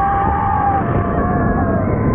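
Roller coaster riders screaming with long held screams as the train dives down a steep drop, the screams fading near the end. Under them is a steady roar of wind and train noise.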